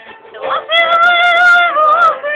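A voice sings one long, loud held note, wavering slightly, then drops in pitch near the end.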